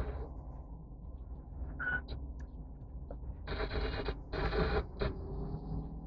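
Low, steady rumble inside a car's cabin as it sits idling at a standstill, with two short, brighter bursts of sound about three and a half and four and a half seconds in.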